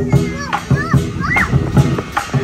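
Chinese lion dance drum beating out a steady rhythm, with a loud stroke right at the start. Children's high voices call out over it in the middle.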